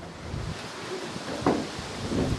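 Rumbling wind noise on a handheld microphone, with a short thump about one and a half seconds in.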